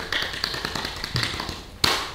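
Scattered light taps and clicks, with one loud sharp crack about two seconds in.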